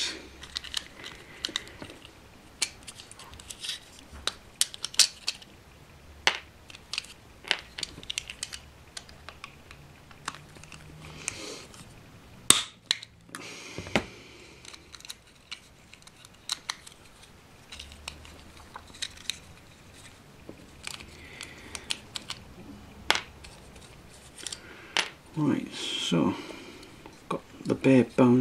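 Scattered sharp clicks and snaps of heavy-duty snips cutting through the plastic frames of OO gauge model tender chassis to free the wheelsets, with small plastic clicks as the parts are handled and set down. One snap about twelve seconds in is louder than the rest.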